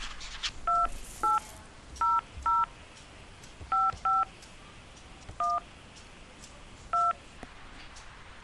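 Telephone keypad touch-tones (DTMF): eight short two-tone beeps at uneven intervals as the eight-digit date 02012006 is keyed into an automated phone menu.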